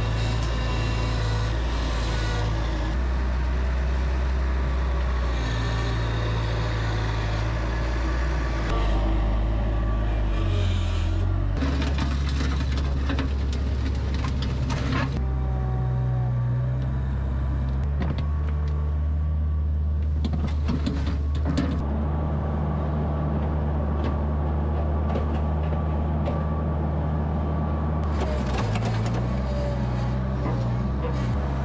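Bobcat 743 skid-steer loader's engine running steadily, its note stepping up and down a few times as it digs, with scattered knocks and scrapes from the bucket working the dirt.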